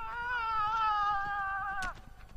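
A horse whinnying: one long, slightly wavering call that lasts nearly two seconds, sinks a little in pitch and stops just before the end.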